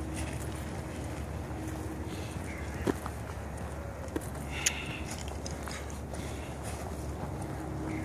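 Wind noise on the microphone and footsteps on a dirt path, with three brief faint clicks about three, four and four and a half seconds in.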